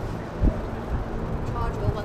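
A hire bike being ridden: a low rumble of road and wind noise with several dull jolts and thumps, the loudest about half a second in. A voice says a single word near the end.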